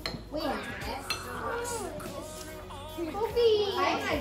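Young children's voices chattering and calling out, with a light clink of a spoon against a bowl about a second in.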